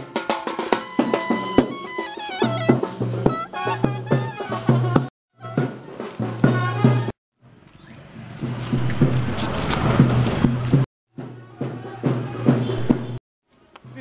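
Street marching band playing: side drums beating over a tune on a wind instrument. The music breaks off at several hard cuts, with a stretch of noisier, tuneless street sound in the middle.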